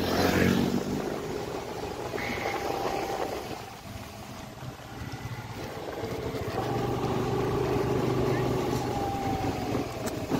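Engine of a motorbike being ridden, heard from the pillion seat; the engine note eases off about four seconds in, then picks up again and holds steady.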